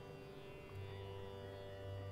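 Faint background music: a steady, sustained instrumental drone in an Indian classical style, its deep low note dropping out briefly and returning just before the middle.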